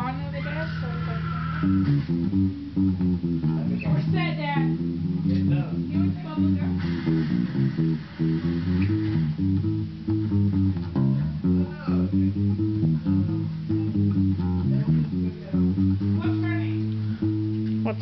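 Electric bass guitar being played, a continuous line of low notes changing every second or so.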